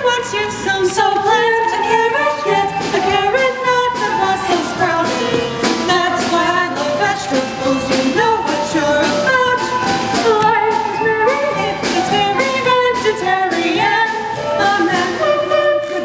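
A musical-theatre duet sung by two voices over instrumental accompaniment with a steady beat.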